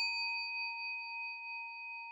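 Struck-bell sound effect: one clear ringing tone with a few higher overtones, slowly fading, used as a comedic 'chiin' punchline for a flubbed moment.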